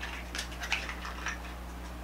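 A few light clicks and taps of small plastic lip-gloss tubes being handled, over a steady low hum.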